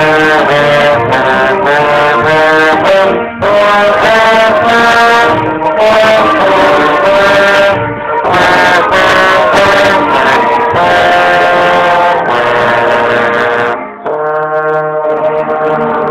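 Trombone played loud and close, a run of changing notes in phrases broken by short pauses about three, eight and fourteen seconds in. After the last pause it plays more softly on held notes.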